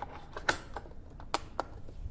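Carriage lever of a Nostalgia grilled-cheese toaster pressed down to start it preheating: several sharp plastic-and-metal mechanical clicks as the carriage goes down and latches.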